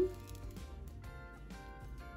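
Quiet background music of steady held notes.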